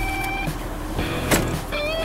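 Background music with a steady held note, and a sharp click about a second and a third in as the manually raised third-row seatback of a Chevrolet Traverse latches upright.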